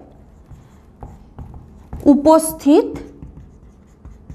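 Felt-tip marker scratching and squeaking across a whiteboard in short writing strokes. About two seconds in, a woman's voice speaks briefly over it, and that is the loudest sound.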